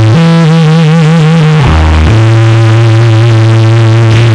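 Live rock band music between songs: long synthesizer-like held notes, the first wavering in pitch, then a steady sustained note from about two seconds in. The recording is loud and heavily brickwalled.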